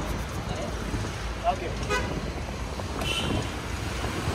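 Open-top safari jeep's engine running with a steady low rumble, heard from the back seat, with a short toot about two seconds in.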